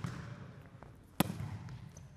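A single sharp smack of a volleyball struck with the forearms in a bump pass, about a second in, echoing in a large sports hall over a faint low background hum.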